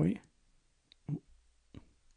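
Three short clicks from a computer keyboard, a faint one just under a second in, a louder one a moment later and another near the end, as keys are pressed to zoom the code editor.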